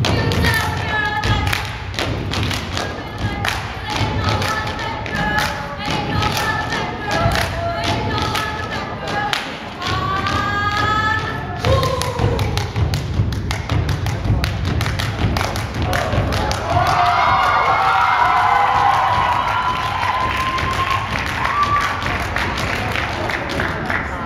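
Dance music with singing playing loud in a hall, over repeated heavy thuds of feet stomping on a wooden stage floor in rhythm.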